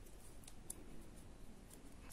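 Faint, sparse ticks and light scraping of metal knitting needles as stitches are worked on yarn.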